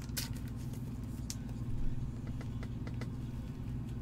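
A steady low hum with a few faint light clicks and rustles of trading cards being handled in gloved hands.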